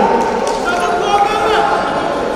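Voices calling out in a large sports hall, with short squeaks from wrestling shoes on the mat.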